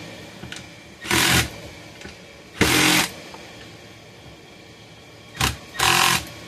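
Cordless drill/driver running in four short bursts, about a second in, near the middle, and twice close together near the end, driving the recoil starter's screws into a chainsaw housing.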